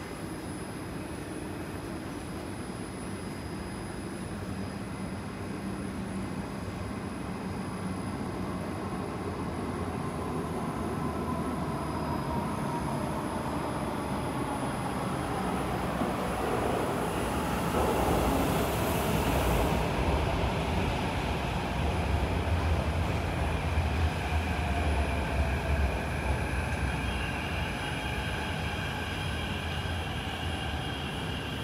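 Kawasaki–CRRC Qingdao Sifang CT251 metro train pulling into an underground station, heard through the platform screen doors. A rumble builds, with a motor whine that falls in pitch as the train brakes, and it is loudest in the second half. The sound settles into a steadier hum with high tones as the train comes to a stop.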